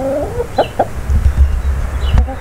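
A barred chicken clucking into the microphone: one drawn-out call, then two short clucks about half a second in.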